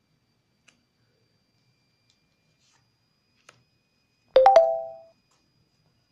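A short chime: three quick struck notes about four seconds in, ringing for about half a second. Before it there is near silence with a couple of faint ticks.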